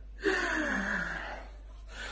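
A man's single drawn-out vocal 'aah', falling steadily in pitch over about a second. It starts suddenly a quarter second in.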